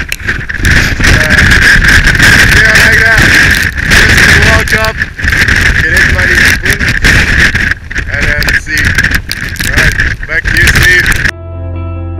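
Strong gusting wind buffeting the microphone, with a steady whistling tone running through it. Near the end it cuts off abruptly and gentle keyboard music begins.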